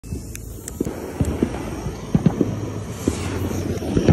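Fireworks going off: a string of irregular pops and thuds over a low rumble.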